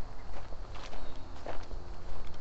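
Footsteps of a walker crunching through dry fallen leaves on a woodland path, several steps at a steady walking pace.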